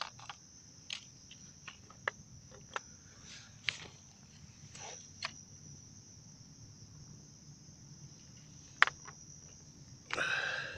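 Crickets chirping in a steady high-pitched chorus, with about a dozen sharp plastic clicks and taps as pocket water-quality meters are switched on and handled on concrete; the loudest click comes near the end.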